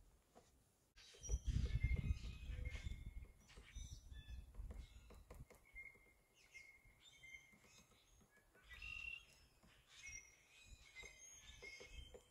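Faint, scattered bird chirps and short calls, with a low rumble of wind or handling on the microphone that is strongest in the first few seconds.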